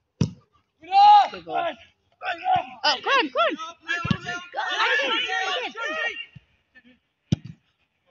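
Men shouting and crying out in drawn-out rising-and-falling calls during a goalmouth scramble in a football match, with a few sharp thuds, once near the start, once about halfway and once near the end.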